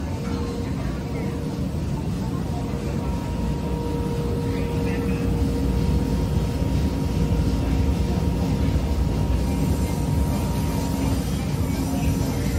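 Busy coffee-roastery interior ambience: a steady low machinery drone with a few constant hum tones, and the chatter of people in the background, growing a little louder about halfway through.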